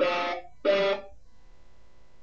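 Sampled guitar from the SampleTank plugin, triggered by MIDI: two short notes, the second ending about a second in.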